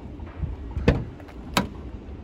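Volkswagen Transporter van's driver door being opened: two sharp latch clicks about two-thirds of a second apart.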